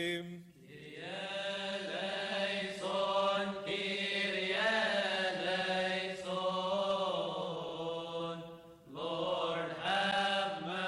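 Deacons chanting a Coptic liturgical hymn in long, drawn-out melismatic lines over a steady low held note. The singing breaks off briefly just after the start and again near the end.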